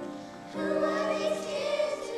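Children's choir singing, with a short breath between phrases before the next phrase comes in about half a second in.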